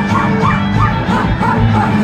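Live rock band playing loud, with electric guitars, in a small club.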